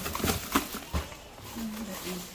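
Brown paper bag and plastic snack packets rustling and crinkling as they are handled, with a few sharp crackles in the first second.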